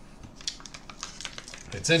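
Van Holten's plastic pickle pouch crinkling and crackling as it is handled and pulled open, in a quick irregular run of small crackles.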